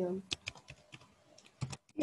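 Typing on a computer keyboard: a quick run of key clicks as a word is typed out.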